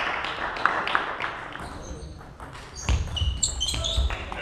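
Table tennis rally: the celluloid ball ticking quickly back and forth off the bats and the table, with a few short high squeaks and low thumps near the end.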